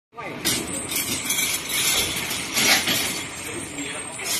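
Metal bed frames knocking and clanking against each other and the truck bed as they are pushed into a cargo truck, a few sharp knocks among people's voices.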